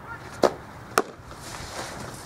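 Two sharp smacks about half a second apart: a softball caught in a catcher's leather mitt, then a second smack as the catcher handles the ball to throw.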